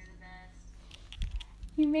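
A few light keystrokes typed on a computer keyboard.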